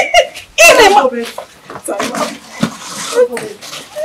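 Voices of several people on location: one loud exclamation or shout about half a second in, then mixed lower chatter and laughter.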